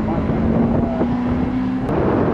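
Honda Integra Type R's 1.8-litre VTEC four-cylinder pulling at high revs as the car drives away, a steady engine note with wind buffeting the microphone. It cuts off suddenly near the end.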